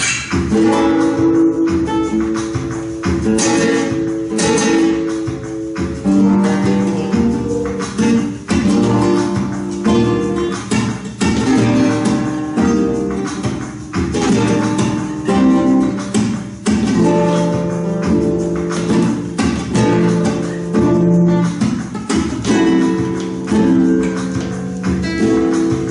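Two flamenco guitars strumming chords together in a tangos rhythm, a simple strumming pattern of repeated sharp strokes over ringing chords.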